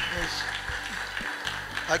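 Soft, sustained background music from a live band, with some faint clicking, and a voice coming in just before the end.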